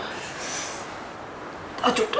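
A person breathing hard and gasping: a sharp intake at the start, a breathy hiss about half a second in, and a brief voiced catch near the end.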